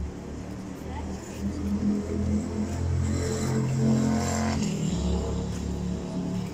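City street traffic: the steady low hum of motor vehicles, with one engine rising to its loudest about four seconds in and dropping away sharply soon after. Voices of passers-by are mixed in.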